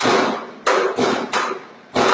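Four sharp blows land in quick succession, about a second and a half in all: a man lying on the ground being beaten.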